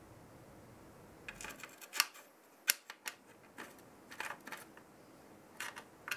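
Irregular light clicks and taps of a CPU cooler backplate and its mounting bolts being fitted against the back of a motherboard, starting about a second in.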